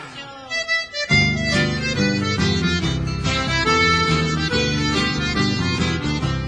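Instrumental break of a sertanejo song led by accordion, with backing band. The music dips for about a second at the start, then comes in fully.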